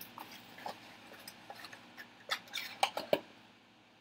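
Hands handling plastic-wrapped trading-card boxes on a table: scattered light plastic crinkles, taps and clicks, with a few sharper clicks past the middle.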